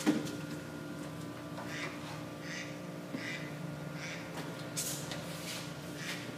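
Faint rubbing and swishing as lubricated copper wires are fed by hand into a conduit, with a short knock right at the start, over a steady low hum.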